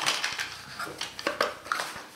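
A small cardboard product box being opened by hand and a plastic module slid out of it: a run of short rustles, clicks and scrapes of card and plastic wrapping, with a few brief squeaks in the second half.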